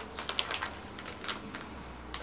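Clear plastic bag crinkling quietly as it is handled and held up to the nose, a scatter of irregular light clicks and crackles.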